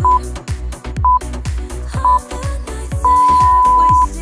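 Workout interval timer counting down: three short beeps a second apart, then one long beep about three seconds in that marks the start of the work interval. Dance-pop music with a steady beat plays underneath.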